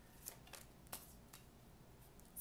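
Faint handling of tarot cards: a card is laid down and turned over on a stone countertop, with about three light clicks of card on stone.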